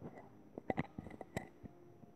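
Handling noise of a phone held close to the microphone: a few sharp, irregular clicks and taps.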